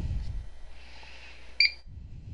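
A single short beep from the Potter PFC-6000 fire alarm control panel's keypad about one and a half seconds in, as a key is pressed to scroll the display, over a faint low hum.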